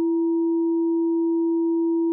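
Sparse electronic music made of pure sine-wave tones: one steady low tone is held throughout, with a much fainter, higher steady tone above it.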